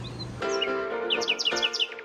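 Soft background music with held notes begins, and a quick run of high, falling bird chirps sounds over it about a second in.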